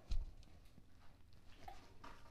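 A single low thump just after the start, then faint footsteps and handling knocks as a person walks carrying a large phonograph horn.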